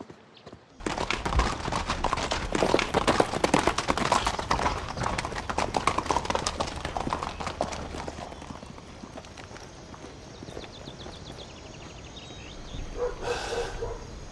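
Horses' hooves clip-clopping on a dirt track, many hoofbeats overlapping as a group of horses comes in. They start suddenly about a second in, are loudest for the next several seconds, then fade away.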